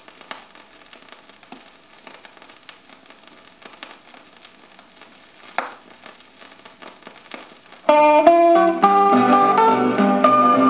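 Vinyl LP surface noise in the quiet gap between tracks: scattered faint clicks and crackle, with one louder pop a little past halfway. About eight seconds in, the next gospel song starts loudly with plucked guitar.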